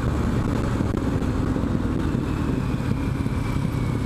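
Triumph Street Scrambler's 900 cc parallel-twin engine running steadily under load in full third gear through a bend.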